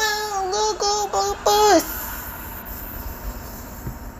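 High-pitched singing voice holding a nearly level note in several short syllables, stopping about two seconds in; then a low steady hiss.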